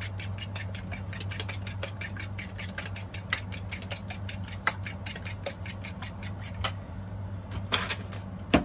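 A fork beating eggs in a bowl: quick, even clicks about six a second that stop a little before the end, followed by a short clatter, all over a steady low hum.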